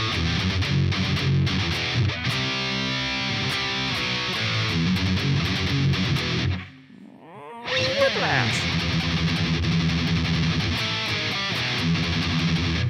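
Distorted electric guitar playing a thrash metal riff of heavily palm-muted E power chords in a galloping rhythm. It cuts out for about a second a little past the middle, then starts again.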